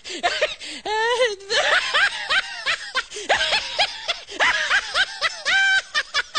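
A person laughing hard in a rapid string of short, high-pitched bursts, with a longer wavering laugh about a second in.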